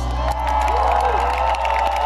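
A live rock band's last chord rings out, its low notes held steady, while the audience cheers and claps as the song ends.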